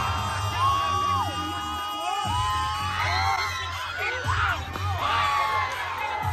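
Loud dance music with heavy, pulsing bass, briefly dropping out about two seconds in, while a crowd whoops and yells over it.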